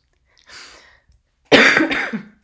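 A woman coughing into her hand: a faint breath about half a second in, then one loud, sudden cough near the end.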